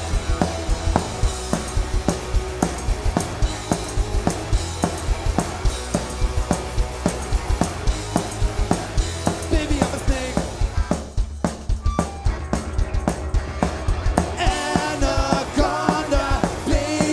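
Pop-punk band playing live: drums and electric guitars drive a steady beat with no vocals. The sound thins out for a few seconds past the middle, leaving mainly the drums and low end, and singing comes back in near the end.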